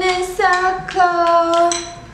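A woman singing a short phrase of three held notes, the last the longest, breaking off just before the end.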